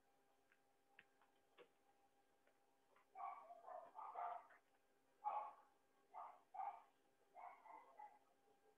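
Short animal calls repeated about six times, starting about three seconds in, faint and irregularly spaced.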